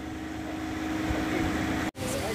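A steady low mechanical hum, one constant tone over a haze of background noise, broken by a sudden dropout just before the end.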